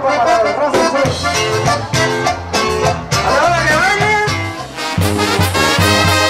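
Mexican regional band music with horns over a bouncing bass line. About five seconds in it changes to a different passage with a steadier bass beat.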